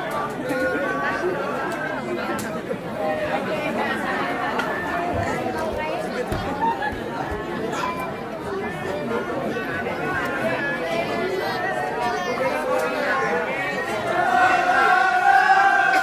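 Audience chatter: many people talking over one another, with one voice rising louder and held near the end.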